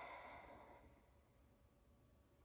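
A woman's audible breath, a soft rush of air that fades out about a second in.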